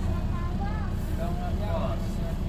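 Steady low engine rumble heard inside a bus, with faint voices in the background.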